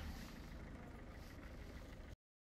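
Faint, steady low rumble of street ambience with road traffic.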